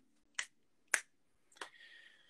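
Three short, sharp clicks about half a second apart, the middle one loudest. A faint, thin, high tone hangs briefly after the last one.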